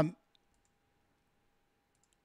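Near silence after a man's voice trails off at the start, with a faint steady tone and a few faint, short clicks.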